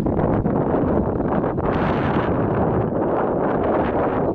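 Wind buffeting the camera's microphone: a loud, steady rush of noise with slight gusting swells.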